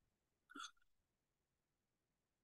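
Near silence, with one brief faint vocal sound, like a short catch of breath, about half a second in.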